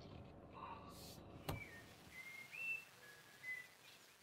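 A few faint, clear whistled bird notes that step up and down in pitch, starting just after a sharp click about a second and a half in, over quiet outdoor background.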